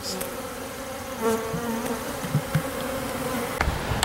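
Honey bees buzzing around an open hive and a newly installed package: a steady hum, swelling and wavering about a second in as a bee passes close. A short low thump sounds near the end.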